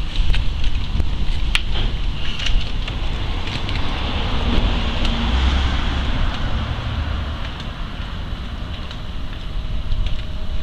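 Wind rumbling on the microphone outdoors, with a steady street-noise hiss and a few sharp clicks about one to two and a half seconds in.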